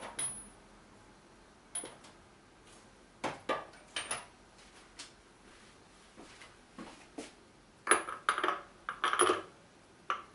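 Small metal tools and sockets clinking and tapping as they are picked up and handled: scattered sharp clinks, with a louder run of several near the end.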